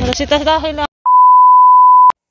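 Voices in a shop, then, about a second in, a loud steady beep, the test tone that goes with TV colour bars. It is used as an editing transition, and it holds one pitch for about a second before cutting off abruptly.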